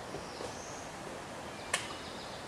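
A single sharp click near the end, over a steady outdoor background hiss.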